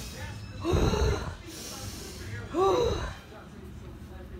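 A woman's frightened wordless vocal sounds: a breathy gasp about a second in and a short pitched cry, rising then falling, at about two and a half seconds.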